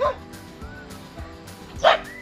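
A guard dog in a wire crate barks once sharply near the end, with the tail of an earlier bark at the very start.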